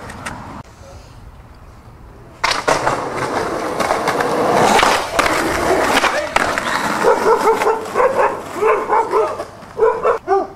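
Skateboard wheels rolling loudly on rough pavement, with clacks of the board, starting a couple of seconds in. A small dog barks repeatedly over the rolling in the last few seconds.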